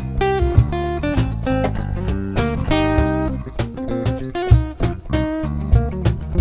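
Live acoustic band playing an instrumental passage: acoustic guitar picking a run of single notes over electric bass and cajon, with regular low beats.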